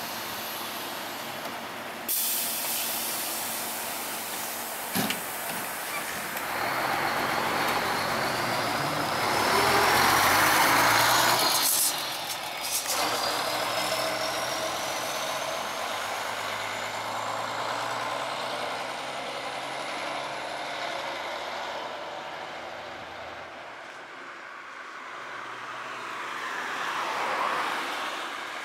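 City bus pulling away from a stop: a loud hiss of air brakes about two seconds in, then the engine accelerating with a high whine that rises, drops back about twelve seconds in, and rises again as the bus grows fainter. A car comes up close near the end.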